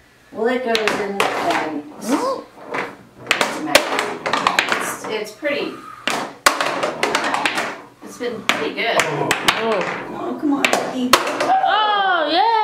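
Excited voices calling out and laughing, broken by several sharp clacks of small balls hitting a plastic ball-toss game board and a wooden parquet floor. A long rising-and-falling 'woo' starts near the end.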